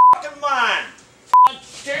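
Two short, steady censor bleeps over a man's shouting: one at the very start and one about a second and a half in, blanking out swearing.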